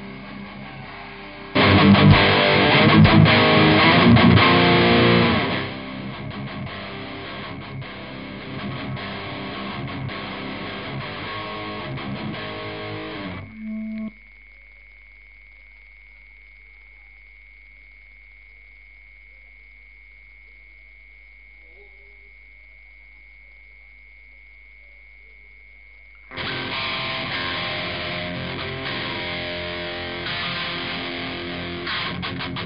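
Live heavy metal band with distorted electric guitar through Marshall amplification. The band plays loudly for about four seconds, then the guitar continues more quietly. About 14 seconds in, the sound cuts out to a lone steady high tone for roughly twelve seconds, then the guitar comes back.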